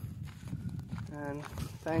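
Footsteps in slippers on rocky ground: a scatter of light clicks and scuffs over a low rumble.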